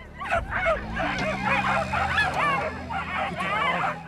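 Racing whippets at the starting traps yapping and whining excitedly, a fast, unbroken string of short high-pitched yelps overlapping one another.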